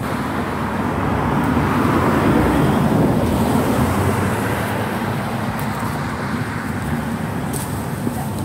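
Road traffic noise: a vehicle passing, its tyre and engine rush swelling to a peak a couple of seconds in and then easing into a steady rushing noise.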